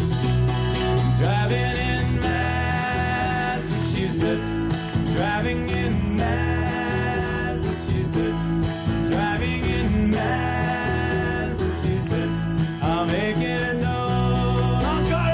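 Live country-folk song played on acoustic guitar and electric bass, an upbeat steady strum over a running bass line, with no clear sung words.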